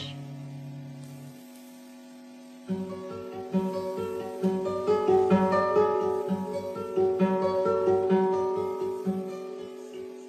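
Instrumental passage of a song, with no singing: a steady held low note, joined about three seconds in by guitar accompaniment. The guitar plucks notes over an even low beat of about two pulses a second.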